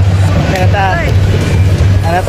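Background music with a steady low bass, with a voice rising and falling over it about half a second to a second in.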